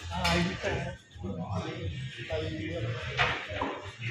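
Speech: a voice talking more quietly than the magician, with short pauses.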